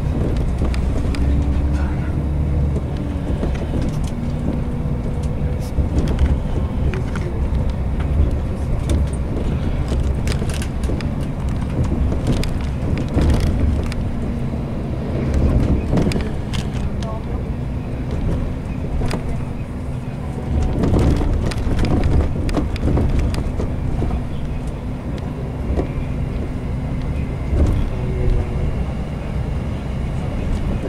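Cabin noise of a coach bus on the move: a steady engine drone and low road rumble, with frequent short knocks and rattles.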